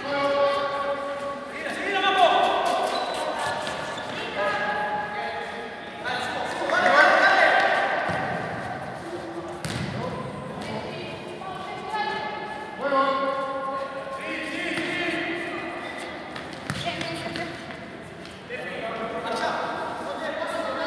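Voices shouting during a futsal match in an indoor gym, loudest about two and seven seconds in, with a few sharp thuds of the ball being kicked and bouncing on the hard court.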